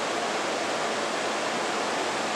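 Steady, even hiss of room and recording noise, unchanging throughout, with no distinct event standing out.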